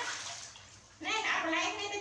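Water splashing in a large aluminium basin as a baby monkey is rinsed by hand, fading away over the first second. About a second in, a voice with wavering pitch starts.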